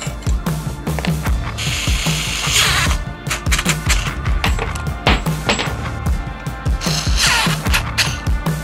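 Background music with a steady beat. Over it, a small cordless electric screwdriver whirs in two short runs, about two seconds in and again near the end, driving screws into the frame's metal brackets.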